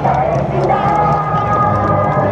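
An amplified voice over a public-address loudspeaker, with the hubbub of a large crowd beneath it.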